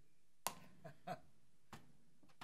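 A sharp click about half a second in, followed by a few fainter short clicks and knocks, over faint room tone.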